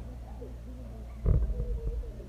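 Two girls laughing hard, with a loud low bump a little over a second in.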